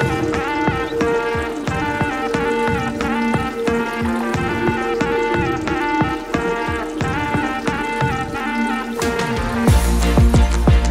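Background music: a melody over steady, evenly spaced beats, with a deep bass coming in near the end.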